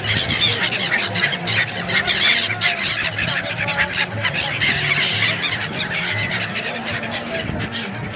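A flock of gulls calling over the water, many short squawking calls overlapping without a break.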